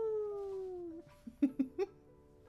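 A woman's long, drawn-out 'awww' that slides slowly down in pitch, followed about a second and a half in by a few short vocal sounds like little giggles.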